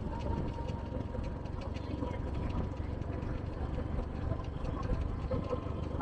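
Outdoor roadside ambience: a steady low rumble with faint scattered clicks.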